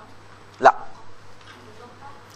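A single short spoken 'lā' (Arabic for 'no') about two-thirds of a second in, the only loud sound; otherwise quiet room tone with a low steady hum.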